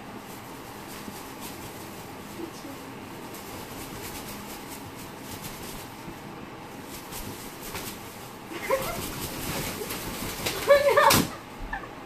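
Green-winged macaw flapping its wings hard on a bedspread, the wingbeats coming in rustling bursts. In the last few seconds a voice rises over them and ends in one sharp thump.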